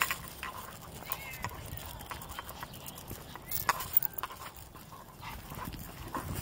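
Small dogs' claws and footsteps clicking on a concrete sidewalk, with two brief high squeaky calls, one about a second in and one past the middle.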